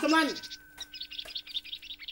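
Small birds chirping in a rapid, busy twitter, starting about half a second in after a voice trails off, with a faint steady tone underneath.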